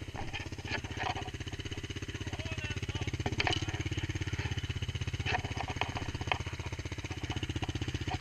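Small ATV engine idling steadily, while the quad sits stuck in mud, with a few short sharp clicks over the running.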